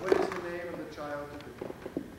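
Indistinct voice sounds, brief and unclear, followed by a few light knocks near the end.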